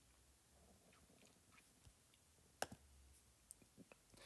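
Near silence with faint taps on a tablet screen: one clearer click a little past halfway, then a few softer ticks near the end.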